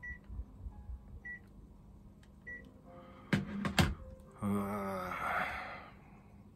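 Three short high beeps about a second apart, typical of an air conditioner unit acknowledging its remote, then two sharp clicks half a second apart. Near the end, a man's long voiced sigh.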